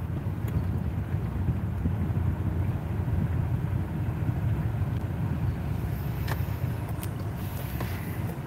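Steady low rumble of a car heard from inside the cabin, with a few faint clicks.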